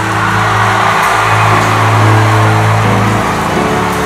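Keyboard playing sustained chords over a deep held bass note, changing chord a couple of times, with a steady noisy wash behind it.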